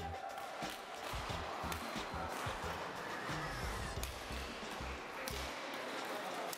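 Background music with a steady beat, over a busy badminton hall with sharp clicks of rackets striking shuttlecocks.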